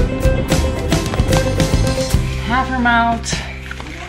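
Background music with a plucked, guitar-like beat that stops about two seconds in. It is followed by a short high-pitched voice.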